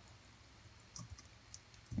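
A few faint computer keyboard keystrokes, short separate clicks starting about a second in, after a near-silent first second.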